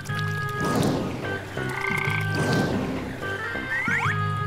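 Frog croaking sound effect, twice, over light background music, with a quick rising whistle near the end.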